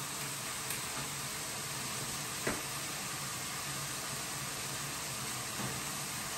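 Steady sizzling from a frying pan of sauce on a lit gas burner, with a light click about two and a half seconds in.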